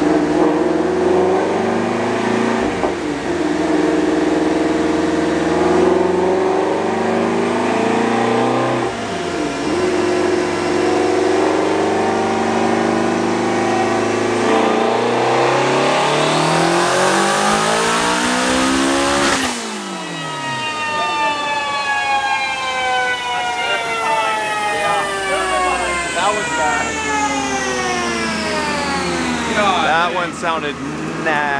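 Twin-turbocharged Ford Mustang Shelby GT350's 5.2 L flat-plane-crank V8 running on a chassis dyno at full boost. The revs dip briefly twice, then climb in one long wide-open-throttle pull in fourth gear that cuts off sharply about two-thirds of the way in, after which the revs fall away steadily as the engine and rollers wind down.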